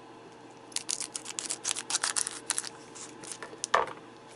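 Foil trading-card booster pack wrapper being torn open: a quick run of crinkly crackles lasting about two seconds, then one louder rustle near the end.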